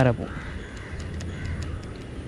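Crows cawing faintly in the distance, with scattered faint high ticks.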